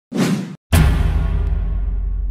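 Logo-intro sound effects: a quick swoosh, a moment of silence, then a sharp deep boom about three-quarters of a second in whose low rumble lingers and slowly fades.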